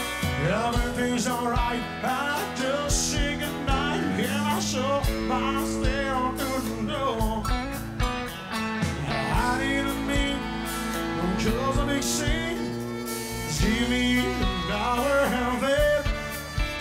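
Live country band playing: fiddle and twangy electric guitars over a steady drum beat.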